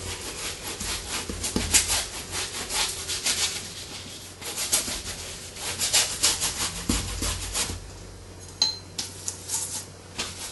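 Paintbrush scrubbing oil paint onto canvas in repeated irregular strokes, with a short high squeak near the end.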